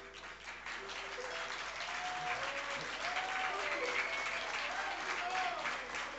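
Audience applauding, the clapping swelling over the first second and holding steady, with a few voices calling out in the crowd.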